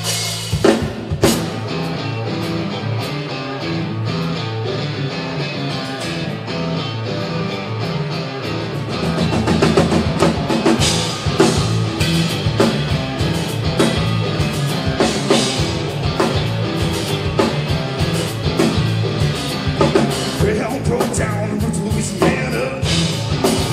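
Three-piece rock band playing live on electric guitar, bass guitar and drum kit, with the drums keeping a steady beat throughout.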